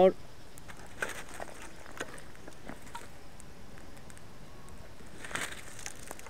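Small wood fire burning between stacked logs, crackling faintly with a few sharp snaps in the first seconds. A short burst of noise comes near the end.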